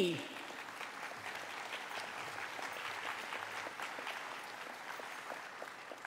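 An audience applauding: a steady patter of many hands clapping that eases off a little near the end.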